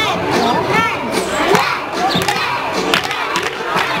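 A group of young girls shouting and cheering together in high voices.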